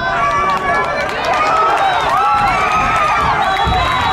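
A crowd of many voices shouting and cheering at once during a football running play, growing louder about half a second in and staying loud.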